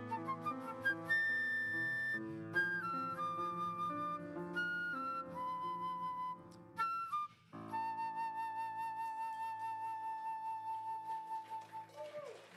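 Live jazz quartet: a flute plays the melody over grand piano, electric bass and drums. It is the closing bars of an original tune, ending on one long flute note with vibrato held over a sustained chord from about the middle to near the end.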